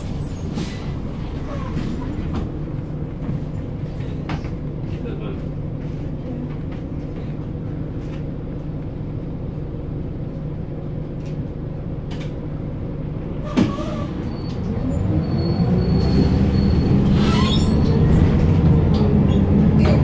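Bus engine and road noise heard from inside the passenger cabin, a steady low drone. A single sharp knock comes about two-thirds of the way through, then the engine grows louder and its pitch rises as the bus accelerates.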